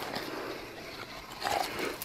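Ice crumbs and slush crunching and scraping as a wooden-handled tool is worked in a freshly cut ice-fishing hole, with a few sharp clicks.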